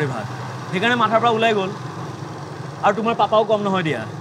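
Small motor scooter engine running steadily as it rides, a low even hum under two short spoken phrases.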